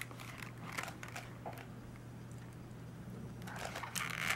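Faint handling sounds of a small paper owl-print case being pried open by hand: a few light taps and clicks, then a soft papery rustle building near the end, over a low steady hum.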